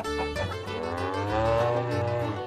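A cow mooing once, one long call that rises and then falls in pitch, starting about half a second in, over backing music.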